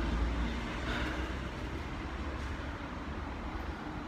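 Low, steady rumble of a train at a railway station, strongest in the first second or so.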